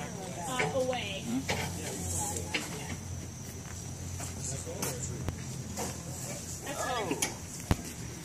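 Brief, indistinct talk among a tree-planting crew at work, over a steady low background hum. A single sharp knock comes near the end.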